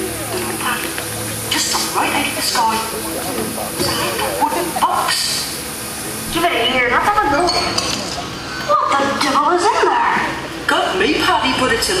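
Soundtrack of a ride film played over theatre speakers: cartoonish character voices mixed with sound effects and some music.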